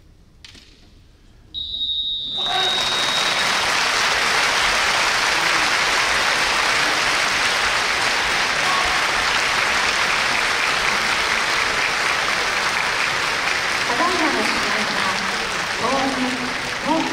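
A timekeeper's buzzer sounds one steady high tone for about two seconds, signalling the end of a kendo bout, and a crowd breaks into loud, steady applause that carries on to the end. Some faint voices come through the clapping near the end.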